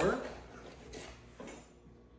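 Faint kitchen handling sounds: a spoon stirring thick bread batter in a glass mixing bowl while flour is scooped from a paper bag, with a few soft knocks and scrapes about a second in.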